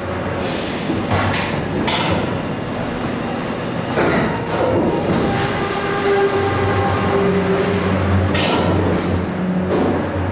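Loud, steady running of tannery machinery, with knocks and scrapes as tanbark is shovelled and tipped into a tanning pit.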